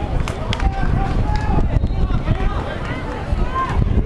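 Voices of players and spectators talking and calling out around an outdoor basketball court, with no one close to the microphone, and a couple of sharp knocks in the first second.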